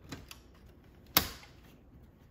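Memory stick pushed into a DIMM slot on a Dell PowerEdge R320 motherboard: a couple of light clicks, then one sharp snap about a second in as the slot's retention clips lock the module in place.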